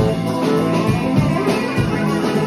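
Live band playing an instrumental passage: saxophone over guitar and keyboard, with drums keeping a steady beat.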